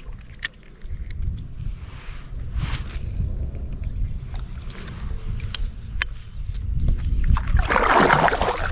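Wind rumbling on the microphone, with scattered light clicks and knocks while a spinning reel is wound in from the kayak. Near the end, louder splashing begins as the kayak paddle starts dipping into the water.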